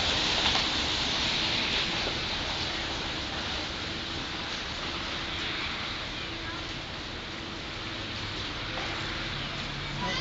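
Steady hiss of outdoor background noise that slowly gets a little quieter, with faint voices in it.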